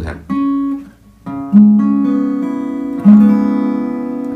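Acoustic guitar playing chords that let open strings ring, part of an E-major progression. There are a few short strums in the first second or so, then two louder chords about a second and a half apart, each left to sustain.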